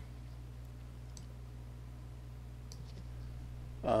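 Steady low hum of room tone with two faint computer-mouse clicks, about a second in and just before three seconds.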